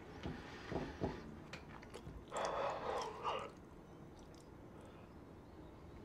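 A few faint clicks, then a person breathing out heavily for about a second.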